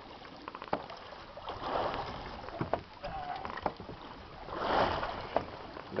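Wind and water noise aboard a boat at sea, swelling twice, with scattered sharp knocks and clicks.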